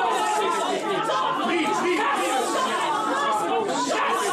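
Many people talking at once: overlapping chatter of a congregation, with no single voice standing out.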